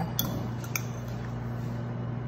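A couple of light clinks of a metal fork against a glass bowl and plate in the first second, as grated cheese is scooped out, over a steady low hum.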